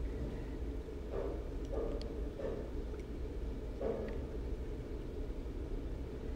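Quiet room tone with a steady low hum, and a few soft rustles and faint ticks from fingers handling a small metal-bodied iPod nano.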